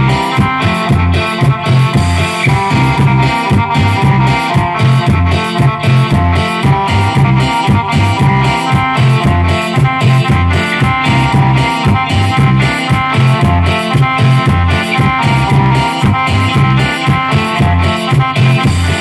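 Live cumbia band playing: electric guitar and electronic keyboard over a strong, steady bass and beat, with regular scraping strokes from a metal güiro.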